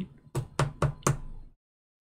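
Four light taps about a quarter second apart: plastic-sleeved trading cards knocked and set down on a tabletop. The sound then cuts out to dead silence for the last half second.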